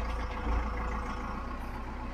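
Step van (bread truck) driving slowly, heard from inside the cab: a steady low engine rumble with road noise, swelling slightly about half a second in.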